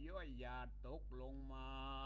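A Buddhist monk's voice reciting a Northern Thai dharma text in a melodic chant, the pitch gliding up and down, then settling into one long held note near the end. A steady low hum runs underneath.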